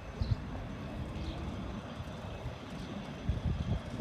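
Quiet outdoor street ambience: an uneven low rumble with occasional soft knocks, and a couple of faint, short high chirps in the first second and a half.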